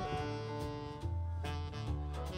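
Live jazz combo playing an instrumental passage: a saxophone melody in sustained notes over keyboard, bass and drums.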